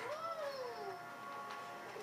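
A drawn-out voice sound that rises briefly and then slides down in pitch over about a second, with faint steady background music tones underneath.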